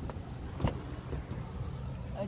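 Low, steady rumble of a car, with one sharp knock a little over half a second in.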